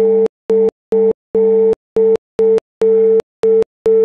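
A steady held tone through the guitar rig, chopped into uneven bursts about twice a second, with dead silence between the bursts and a click each time it cuts in or out.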